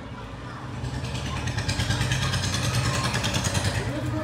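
A small engine running, getting louder from about a second in, with a rapid even pulsing.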